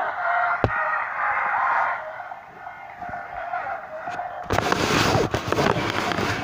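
A girl's brief laugh at the start, with a single sharp click just after. From about four and a half seconds in, loud crackling and rubbing from the camera being handled right at its microphone.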